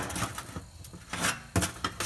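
A hanging rack of spare ribs on a metal hook being lowered into a metal pan, with light scrapes and knocks, one sharper knock about one and a half seconds in.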